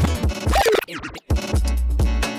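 A DJ scratching over a hip-hop beat on a Rane One controller's platter. About half a second in, a scratched sample sweeps quickly up and down in pitch; the sound then drops out for a moment around one second in before the beat and heavy bass cut back in.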